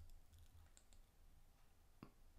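Near silence with a couple of faint computer mouse clicks a little under a second in.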